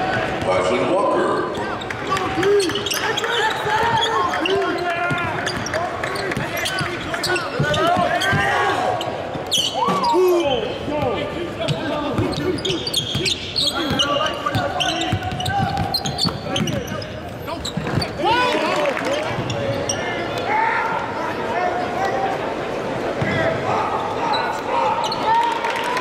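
Live basketball game sound: a ball dribbling on a hardwood court under a steady mix of crowd voices and shouts.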